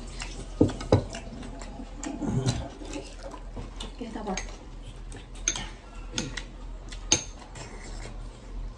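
Chopsticks clicking and scraping against a ceramic plate while eating, a few short sharp clicks, the loudest about seven seconds in.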